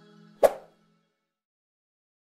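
The last of the outro music fades out, and about half a second in a single sharp click-pop sound effect sounds, the click of the animated subscribe button.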